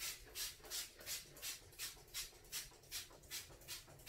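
Trigger spray bottle squirted rapidly and repeatedly onto a glass shower door: a quick, even run of short hissing sprays, about three a second, roughly a dozen in all.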